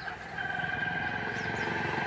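A motor vehicle's engine running steadily and growing gradually louder as it draws nearer.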